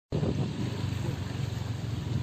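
Steady low rumbling outdoor noise by the open sea, with no distinct events.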